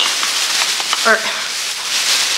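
Plastic shopping bag rustling and crinkling as it is rummaged through by hand.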